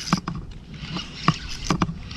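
Several short, irregular splashes and knocks at the boat's side as a hooked speckled trout is brought in.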